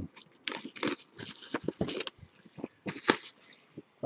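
Clear plastic wrapper on a trading-card box crinkling and tearing as it is pulled off by hand, in short irregular crackles.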